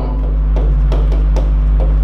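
A steady low electrical hum with faint background music, and about seven light, irregular taps of a stylus writing on a touchscreen whiteboard.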